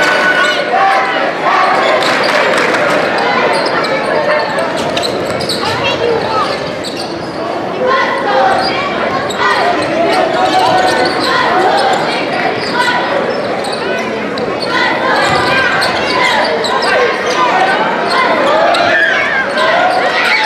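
A basketball being dribbled on a hardwood gym floor during live play, over steady crowd chatter in a large, echoing gym.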